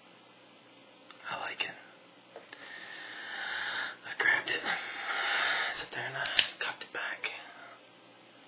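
A man whispering in several breathy phrases.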